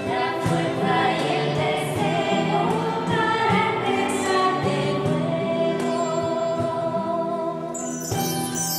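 Choir singing a hymn with instrumental accompaniment.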